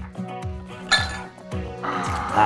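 Small glass shot glasses clinking once, about a second in, over background music with a steady beat.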